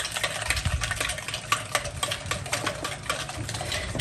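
Wire whisk beating liquid cake batter in a glass bowl, a quick, uneven run of clicks and taps against the glass.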